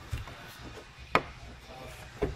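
A single sharp metallic click about a second in, with a softer knock just before it, from the metal roof-latch lever of a TAXA Cricket camper being worked by hand.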